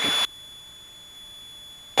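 Faint, even hiss of an aircraft intercom line with its audio gated down. A steady high electronic tone sounds with the last word at the start and cuts off with it.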